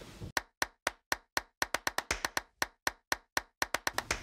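A rapid run of sharp clicks or claps, about two dozen, with dead silence between them. They start about a third of a second in and come faster toward the end.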